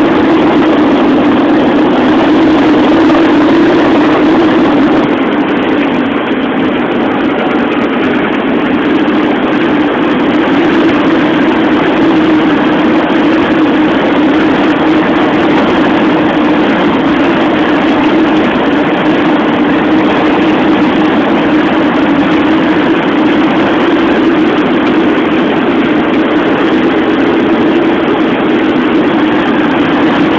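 Steady, loud drone of a vehicle travelling along a highway: engine and road noise running on without a break, slightly louder for the first few seconds.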